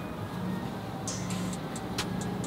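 Faint clicks and creaks of a long-handled wrench turning V8 cylinder-head bolts through their final 90-degree angle-torque stage, over a low steady hum.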